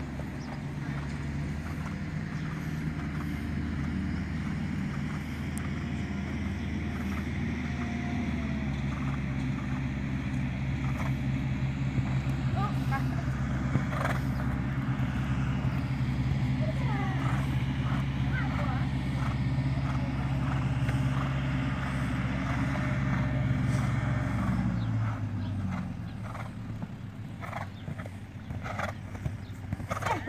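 A motor vehicle's engine running steadily close by, a low hum that shifts pitch about a third of the way in and fades out near the end. Soft, irregular hoofbeats of a horse cantering on arena sand sound over it.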